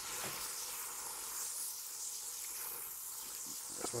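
Butter-and-flour roux sizzling with a steady high hiss in a hot pan as white wine is poured in to deglaze it.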